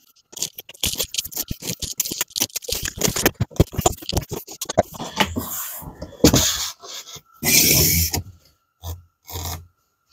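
Cardboard product box being cut and opened: a box cutter runs along the packing tape in a fast series of scratchy clicks, then the cardboard flaps and lid are lifted and slid open with scraping and rustling.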